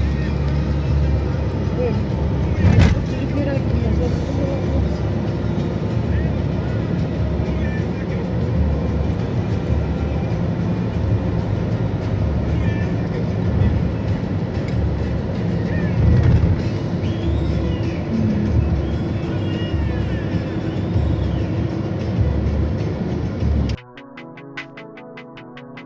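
Steady road and drivetrain noise heard inside a Ford Fusion sedan's cabin while driving, with a single thump about three seconds in.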